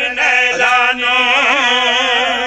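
A man's voice chanting one long, ornamented melodic phrase whose pitch wavers and curls throughout. It is a zakir's sung devotional recitation, in the chanted style of a qasida or masaib.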